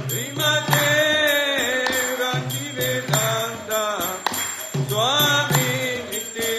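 Devotional kirtan chanting: voices singing a mantra with gliding pitch, over a steady metallic jingling of bells or hand cymbals.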